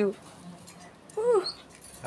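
A caged pet bird gives one short call about a second in, its pitch rising then falling.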